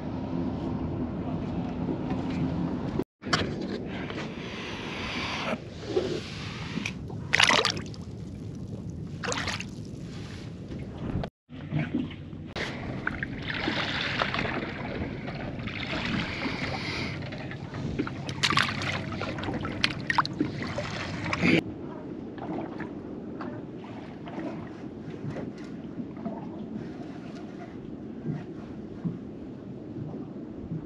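Wind on the microphone and water sloshing against a small boat's hull, with scattered knocks and rustles of handling. The sound drops out completely for a moment twice, and the background changes abruptly near the two-thirds mark.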